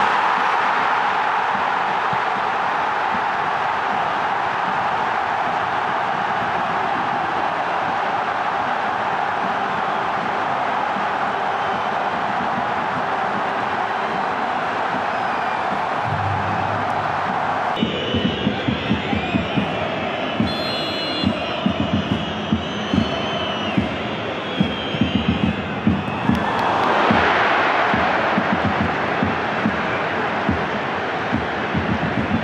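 Football stadium crowd noise: a steady, loud roar for about the first eighteen seconds. Then, after an abrupt change, chanting with many sharp rhythmic beats, swelling again near the end.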